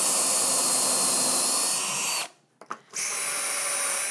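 Cordless drill driver boring pocket holes into pine with a stepped bit through a Kreg K4 pocket-hole jig: a steady whine of motor and cutting. It runs for about two seconds, stops briefly with a click or two, then runs again for the second hole.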